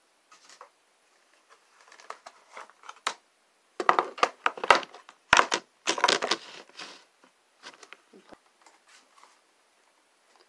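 Clear plastic organizer bins being handled and set down on a dresser top, with small items put into them: irregular plastic knocks, clatters and rustles, busiest in the middle of the stretch.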